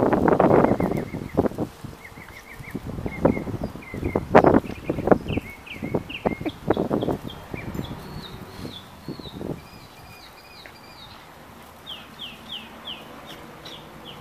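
Dogs scuffling and scrambling on gravel in rough play, in irregular loud bursts that die down after about nine seconds. Small birds chirp over it in quick repeated notes, and these carry on alone near the end.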